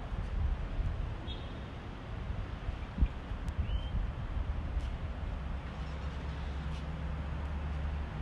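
Outdoor background noise: a steady low rumble, with a single sharp thump about three seconds in and two short high chirps.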